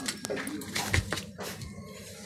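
A few light knocks and clicks of small tools being set down and picked up on a rubber work mat, with one heavier knock about a second in.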